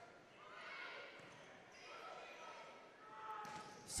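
Faint arena crowd murmur with scattered distant voices, a quiet lull between rallies.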